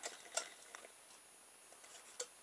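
Mostly quiet, with a few faint light clicks in the first second as polystyrene-plate wheels and a polystyrene cup body are handled.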